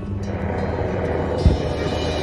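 Fireworks display: a steady rumbling din of launches and bursts, with one deep firework boom about one and a half seconds in.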